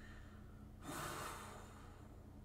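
A man takes one soft, breathy breath about a second in, lasting under a second, over faint room tone.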